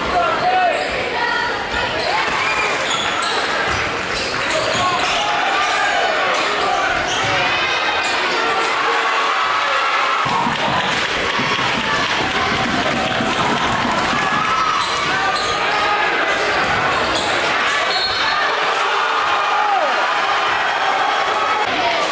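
Basketball being bounced on a hardwood gym floor at the free-throw line, over a steady hubbub of many spectators' voices talking and calling out.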